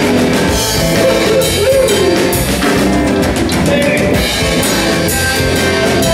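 Live rock band playing an instrumental passage with no vocals: electric guitar, bass guitar and drum kit, with a few sliding guitar notes.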